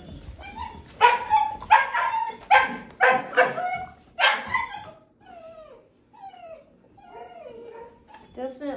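Labradoodle puppy barking: a run of about six sharp yaps over some three seconds, then softer whines that fall in pitch.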